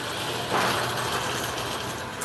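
Wire shopping cart rolling over a concrete floor, a steady rumbling noise from its wheels and basket.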